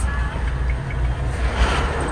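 Land Rover Evoque's engine running, heard from inside the cabin as a steady low rumble. About a second and a half in, a rushing swell rises and fades as a vehicle passes close by.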